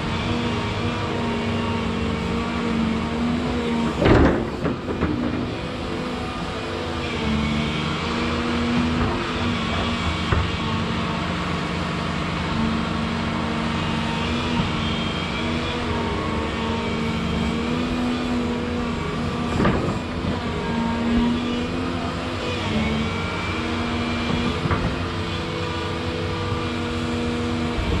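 Volvo 235EL tracked excavator working: its diesel engine runs steadily under load while a higher whine rises and fades about three times as the hydraulics drive the boom and tiltrotator. Two loud knocks stand out, the louder one a few seconds in and another about two-thirds of the way through.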